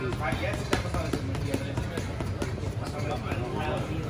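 Gloved punches landing on a heavy bag: a run of sharp thuds, the hardest just under a second in.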